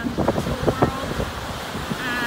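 Small waves breaking and washing over a rocky cobble beach, with wind buffeting the microphone. A few short sharp knocks stand out in the first second.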